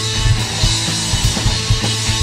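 A punk rock trio playing live: electric guitar, bass guitar and drum kit in a driving, steady beat, in a short instrumental gap between sung lines.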